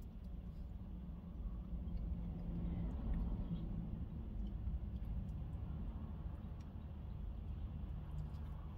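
Steady low rumble inside a car's cabin with a faint hum, and a few faint soft clicks of someone chewing.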